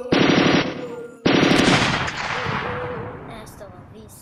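Machine-gun fire sound effect: two rapid bursts of automatic fire, the second trailing off over about a second.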